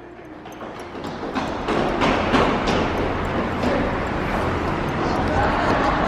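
Rushing and handling noise of a handheld camera being carried at a run, with irregular knocks. It grows louder over the first couple of seconds and then holds steady.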